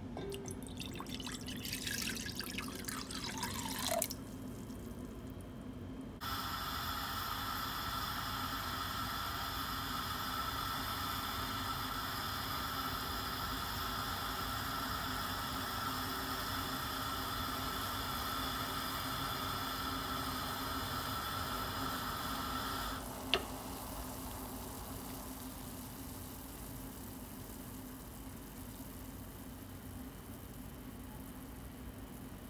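Sauce poured from a glass measuring jug into a metal pot, splashing and filling for about four seconds. Then the sauce heats to a simmer on a gas hob with a steady hiss that stops after a sharp click about two-thirds of the way through, leaving a fainter hiss.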